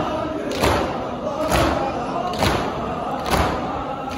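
A large crowd of men beating their chests in unison (maatam): four heavy thumps a little under a second apart, with chanting voices of the crowd between the strikes.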